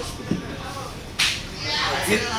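A sudden sharp rustling swish about a second in, followed by a hissing rustle, as things are handled and pulled about; faint voices are under it.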